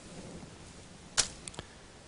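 Quiet room tone with a short sharp click a little over a second in, followed by two fainter ticks.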